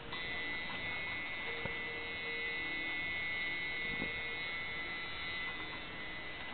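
Tattoo machine running with a steady high buzz.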